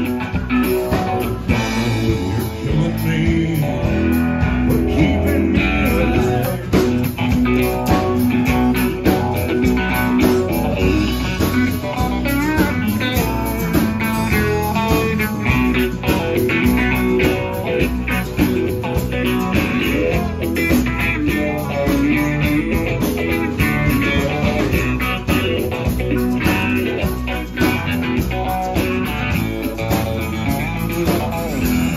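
Live blues-country band playing an instrumental stretch of a song: Telecaster electric guitar, electric bass, drums and harmonica together over a steady beat.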